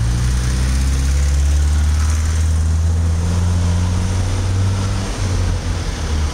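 A motor vehicle engine running steadily close by, a low even hum that changes slightly about five seconds in.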